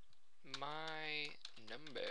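Keystrokes on a computer keyboard as a line of code is typed, with a man's voice holding one long, steady vocal sound in the middle and speaking briefly near the end.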